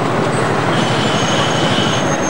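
Ashok Leyland bus at a bus stand: a loud steady rushing noise, with a high steady squeal that starts under a second in and holds to near the end.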